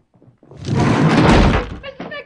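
A loud, heavy rumbling crash starts about half a second in and lasts just over a second before dying away.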